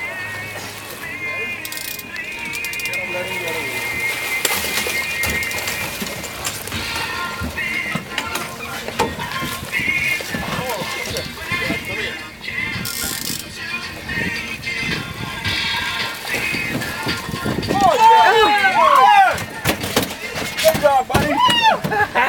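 Commotion of a bull mahi-mahi being landed on a fishing boat: excited shouting and knocks on the boat, loudest near the end.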